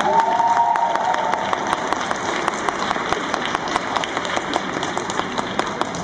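Audience applause in an ice rink after a figure skating program ends, made of many separate hand claps that slowly thin out and soften. In the first second or so there is a single held high-pitched call from the crowd.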